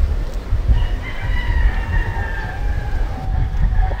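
A rooster crowing once: one long call, starting about a second in and slowly falling in pitch, over a steady low rumble.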